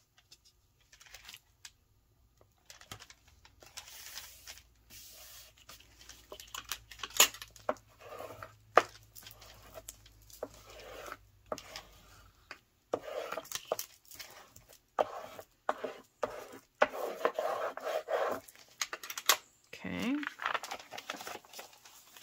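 Paper handled on a cutting mat: sheets rustling, sliding and being rubbed down, with scattered light taps and clicks, as a glued paper strip is lined up and pressed flat with a bone folder. A brief low rising vocal sound near the end.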